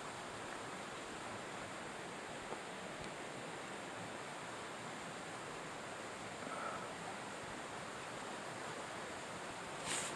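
Steady, even hiss of woodland background noise, with no distinct events in it.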